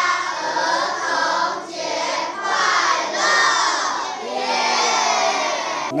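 A group of schoolchildren shouting together in unison, in about five short phrases one after another.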